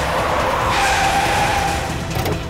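A car's engine running with its tyres squealing in a skid; a sharper squeal comes in a little before halfway and holds for about a second.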